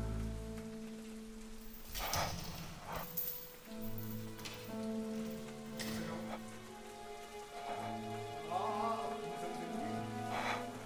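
Slow, sustained music-score notes over a steady hiss of rain, with a few brief noises about two, three and six seconds in.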